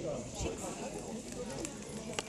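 Faint, indistinct voices in the background, with a few light knocks.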